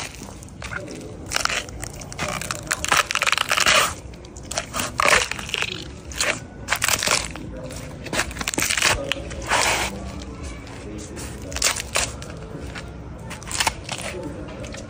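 An elephant's foot crushing a row of raw carrots on concrete: a run of loud crunches and snaps coming in several bouts as the carrots break apart under its weight.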